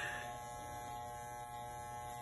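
Electric hair clippers running with a steady hum while trimming the hair around the ear.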